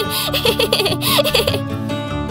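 A cartoon kitten giggling, a quick run of short laughs that stops about three-quarters of the way through, over background music.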